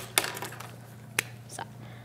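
A few small clicks and taps of plastic dry-erase markers being handled on a tabletop and passed from hand to hand, with one sharper click a little past the middle.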